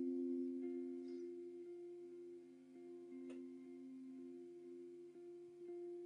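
Quiet guitar music: a soft two-note chord held steadily, notes ringing on without a new attack, with one faint click about three seconds in.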